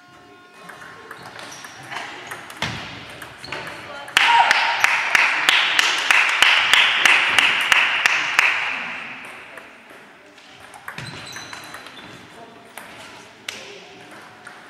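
Table tennis ball clicking off bats and table during a rally. About four seconds in, the point ends in a loud burst of clapping and cheering that lasts about four seconds and fades away. Scattered ball bounces return near the end.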